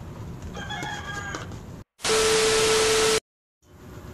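A short pitched call in the background, about a second long, then a loud burst of static with a steady hum running through it for just over a second, cut off cleanly by dead silence on either side like an edited-in transition effect.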